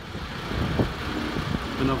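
Diesel engine of a parked delivery lorry idling, a steady low rumble.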